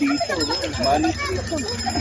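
Speech only: people talking, the words indistinct, over a steady low rumble.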